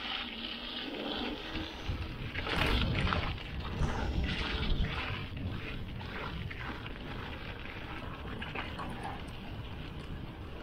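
Mountain bike rolling down a dirt singletrack: tyres rumbling over rough ground with rattles and knocks from the bike, and a rushing noise of moving air. It is loudest and bumpiest from about two to five seconds in, then settles into a steadier rolling rush.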